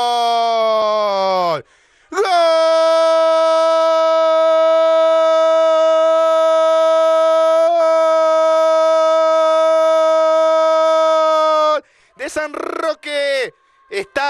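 A football commentator's drawn-out goal shout, the typical long-held "goooool" of Latin American play-by-play, celebrating a converted penalty. The first held shout falls in pitch and breaks off; after a short breath a second one is held at a steady pitch for about ten seconds before quick commentary resumes near the end.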